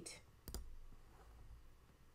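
A single sharp computer click about half a second in, as a menu item is selected on screen. Otherwise quiet room tone.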